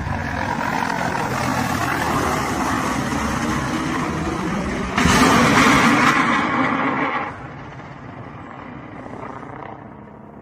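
Russian military helicopter flying low, its engine and rotor noise steady. About five seconds in, a sudden, louder rushing noise lasts about two seconds as a missile reaches the helicopter, then the sound drops away.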